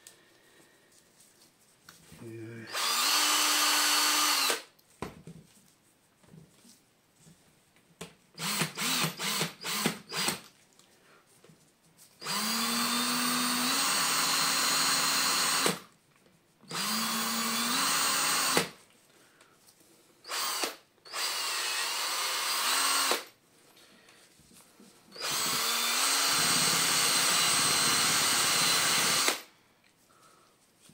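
Cordless drill spinning a brass plane adjuster wheel in its chuck while it is buffed with a cloth, run in repeated trigger pulls. Each run of one to four seconds spins up to a steady whine, and about a third of the way in there is a quick string of short blips.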